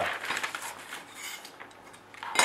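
Thin cut aluminium bracket pieces handled on a workbench: a few light clinks and rustles.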